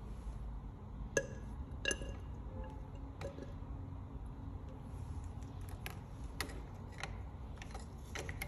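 Light glass clinks and clicks of a glass pipette knocking against a glass test tube and bottle neck while oil is dispensed, a handful of small taps with the two loudest about one and two seconds in, each with a brief ring, over a low steady hum.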